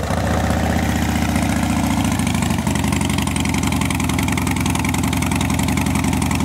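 2013 Harley-Davidson Dyna Street Bob's V-twin engine idling steadily through aftermarket Vance & Hines exhaust pipes. The note shifts slightly about two and a half seconds in.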